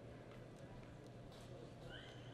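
Faint hoofbeats of a horse loping on soft arena dirt, over a steady low hum.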